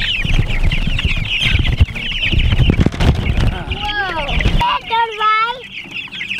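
A crate of young meat chicks peeping continuously in a dense high chorus, over a low rumble of the wheelbarrow carrying them rolling across the ground; the rumble stops about four and a half seconds in, and children's voices come in near the end.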